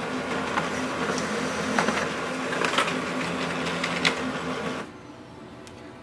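Brother DCP-L2640DW monochrome laser printer printing a page: a steady mechanical whir with a low hum and scattered clicks, which stops about five seconds in as the page is delivered to the output tray.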